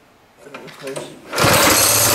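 Small single-cylinder go-kart engine starting suddenly about one and a half seconds in and running loud and fast on the choke. Its carburettor has been modified, and it really revs out.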